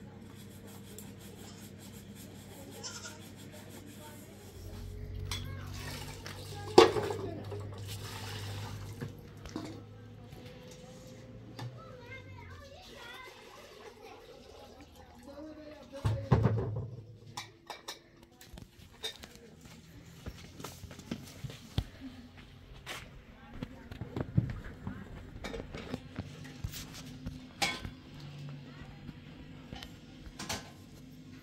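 Dishes washed by hand: metal pots and bowls knocking and clinking, with one sharp clank about seven seconds in. Water is poured from a plastic jug and splashes about sixteen seconds in, followed by many short clinks.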